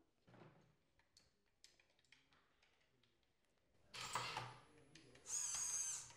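Small electric motors on an FTC robot's hang mechanism driving: a short whirring burst about four seconds in, then a steady high motor whine near the end.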